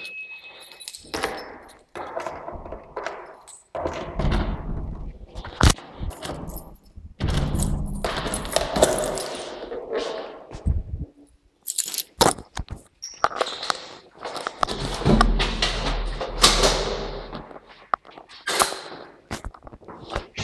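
Irregular thuds, knocks and rustling with several sharp clicks, the handling noise of a hand-held camera being moved around in an empty room.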